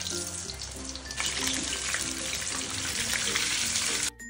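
Flour-coated chicken deep-frying in hot oil, a dense steady sizzle that grows louder about a second in, with light background music underneath.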